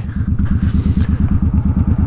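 Suzuki Boulevard M50 V-twin with aftermarket Vance & Hines exhaust, heard from the saddle while the bike is ridden at low revs. The exhaust gives a steady, even beat of about a dozen pulses a second, with no revving.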